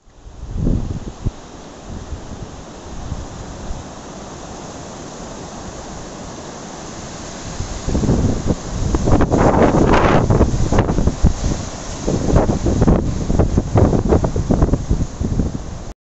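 Wind buffeting the microphone and blowing through the trees: a steady rush at first, gusting much louder from about eight seconds in.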